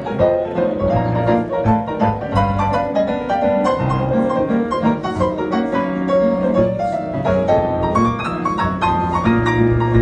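Kawai hybrid upright piano played with both hands: busy runs of quick notes in the middle and upper range over held bass notes.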